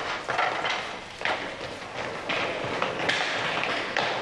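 Acoustic guitar strummed hard, with rough, unevenly spaced strokes.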